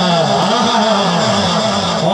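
A man's voice held in one long, wavering drawn-out call, a volleyball commentator stretching out a vowel during the rally, over a steady crowd-and-ground background.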